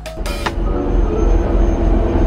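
Background music cuts off right at the start, giving way to the steady low rumble and rattle of an airport shuttle bus heard from inside the cabin, with a faint high whine over it.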